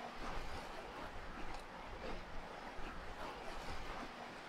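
Faint, steady outdoor background noise on a rooftop, with wind on the microphone and no distinct events.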